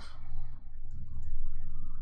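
A few faint clicks from a computer mouse and keyboard in the first second, over a steady low hum that is the loudest sound.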